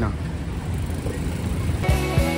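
Street traffic noise with vehicle engines running. Music cuts in near the end.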